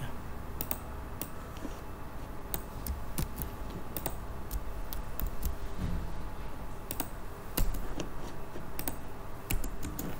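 Typing on a computer keyboard: scattered, irregular keystrokes over a steady low background hum.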